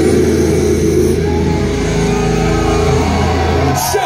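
Death metal band's distorted electric guitars and bass holding a final chord, ringing out as a steady drone after the drums stop. The chord is cut off sharply just before the end.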